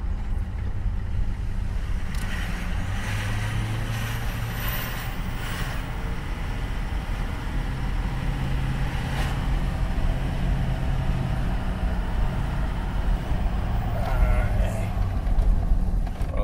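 The 6.0-litre Power Stroke turbo diesel V8 of a 2005 Ford Excursion, heard from inside the cabin while driving, with road noise. It is a steady drone at around 2000 rpm that grows slightly louder as the truck gently speeds up from about 25 to 40 mph.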